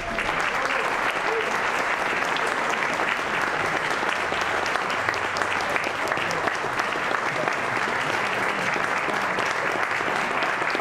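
Audience applauding, a steady wash of many hands clapping that holds at an even level.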